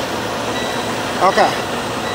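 Steady running noise of an idling semi truck heard inside the cab, with a higher hiss setting in right at the start and a faint steady high tone.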